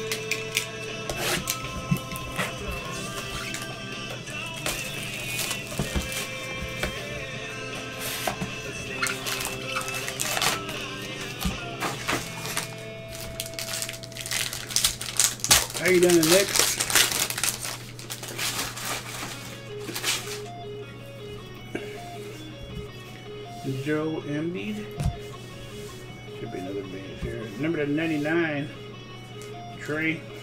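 Background music, with cellophane wrap on a trading-card box crinkling and tearing as it is pulled off. The crackling is loudest in a burst midway through.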